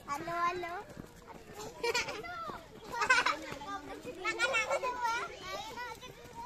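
Children's voices chattering and calling out as they walk, with several short high-pitched shouts about two, three and four-and-a-half seconds in.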